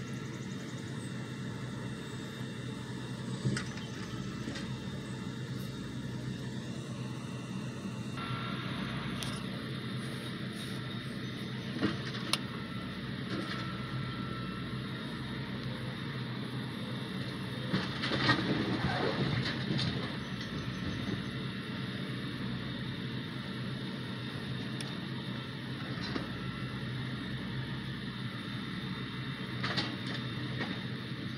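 Railroad work-train machinery unloading used ties: an engine running steadily, with a few sharp knocks and a louder stretch of clatter about eighteen to twenty seconds in.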